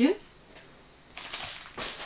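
Plastic packaging crinkling and rustling as packs of tyre storage bags are handled, starting about a second in.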